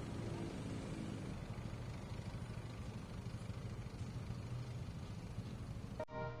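City street traffic: cars, motorcycles and buses running past in a steady mix of engine hum and road noise, with one engine's note standing out in the first second or so.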